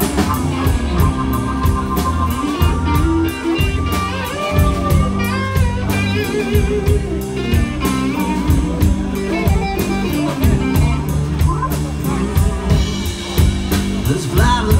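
Live blues band playing a slow blues: electric guitars, electric bass, drum kit and keyboard, with a lead guitar line of bent, sliding notes over the rhythm section.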